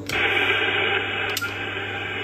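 Steady hiss of receiver noise from a Kenwood TS-590 transceiver's speaker in USB mode. A single sharp click comes about one and a half seconds in as the band is switched from 10 m to 6 m, and the hiss carries on.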